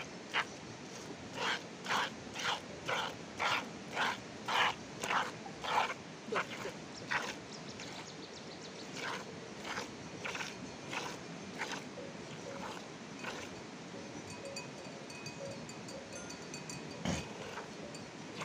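A sheep being milked by hand: squirts of milk hissing into a plastic tub, about two a second and evenly paced for the first seven seconds, then fewer and weaker. There is a single knock near the end.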